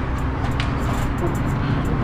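Steady low rumble of road traffic, with a light click about half a second in.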